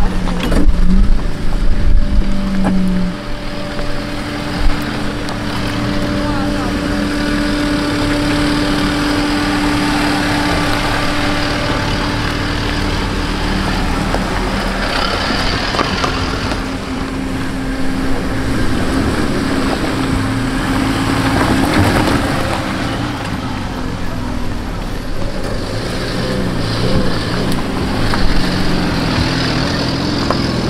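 Fiat Panda 4x4 engines running at low speed as the cars crawl one after another over a rocky dirt track, a steady engine hum that swells a little past the middle, with voices mixed in.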